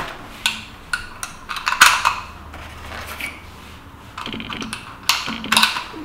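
Brass .223 Remington cartridges clicking as they are taken from their box and pressed one by one into the Lynx 94 rifle's detachable box magazine: a few sharp, irregularly spaced metallic clicks, the loudest about two seconds in.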